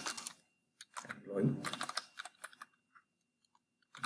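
Typing on a computer keyboard: runs of quick keystrokes, densest between about one and two and a half seconds in, then a few scattered faint taps.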